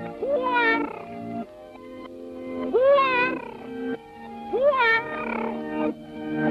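Three cartoon cat yowls, each a long meow that swoops up in pitch and slides back down, over a small band's accompaniment with held notes.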